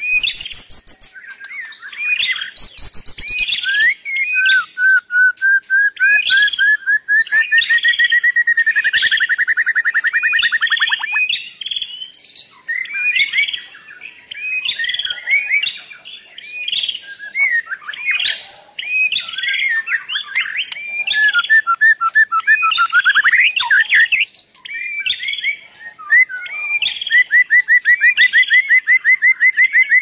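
Birdsong: chirps and calls throughout, with two long runs of fast repeated notes, one rising slightly in pitch over several seconds about five seconds in, the other near the end.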